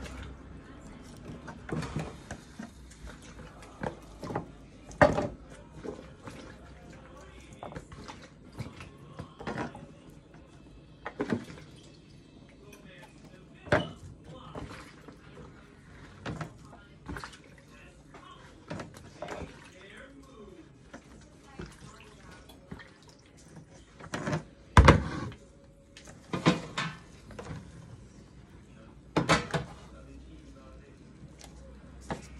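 Vegetables being dropped and placed by hand from a bowl into a foil roasting tray: irregular light knocks and rustles, with a few louder knocks.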